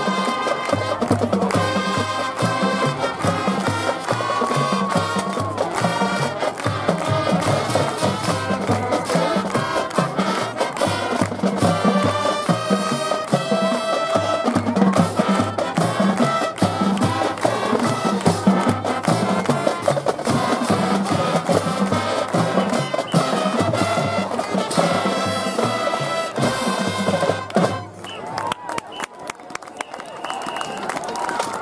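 Marching band playing, brass and drums together with a steady beat. The music stops near the end, leaving crowd noise from the stands.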